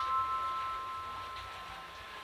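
Background music: a bell-like note ringing and fading away.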